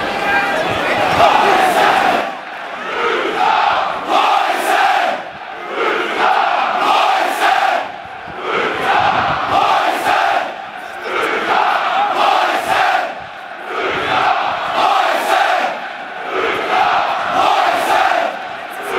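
Football supporters chanting in unison in a stadium stand. The chant comes in repeated phrases that swell and dip every two to three seconds.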